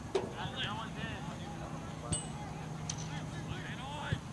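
Distant, overlapping shouts of players across an outdoor soccer field, with a sharp thud of the ball being kicked just after the start and another about two seconds in.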